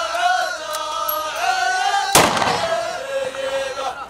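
A line of men chanting a sung poem together, their voices rising and falling. About two seconds in, a single loud rifle shot is fired over the chant.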